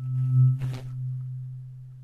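Weighted C-128 tuning fork humming after being struck: a low, pure hum at 128 hertz that swells in the first half-second and then slowly fades. A faint higher ring is heard only at the start.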